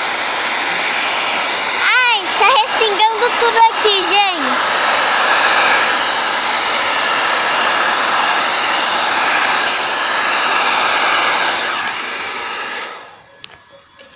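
Hand-held hair dryer blowing hot air steadily onto wax crayons to melt them, then switched off near the end.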